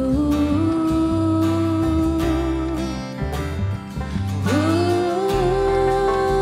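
A woman singing long held notes, each scooping up into pitch, over acoustic guitar and bass as a country ballad begins. A second held note starts about four and a half seconds in.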